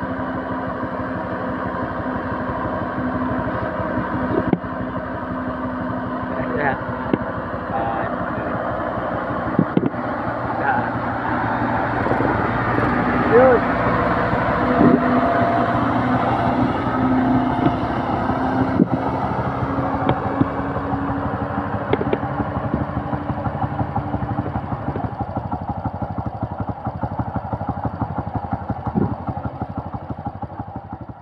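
Motorcycle engine and a cargo truck's engine running at road speed with tyre and road noise; it grows louder through the middle as the motorcycle draws alongside the truck, and eases off near the end.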